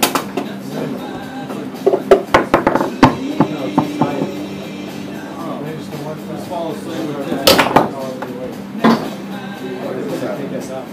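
Foosball table in play: the hard ball and plastic men clacking in sharp knocks, a quick flurry about two seconds in and more near the end.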